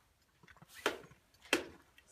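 Two sharp plastic clicks, under a second apart, as a trail camera is handled and turned on its ladder mount.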